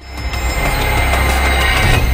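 Intro sting of a TV news programme: music over a deep rumbling swell that rises over the first second and then holds.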